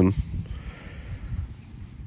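Low, uneven rumble of outdoor background noise, typical of wind on the microphone, after the last bit of a man's word at the start.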